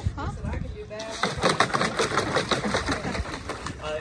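A dog pawing and digging at the water in a shallow plastic kiddie pool: a quick, irregular run of splashes that starts about a second in and goes on nearly to the end, scooping water out over the rim.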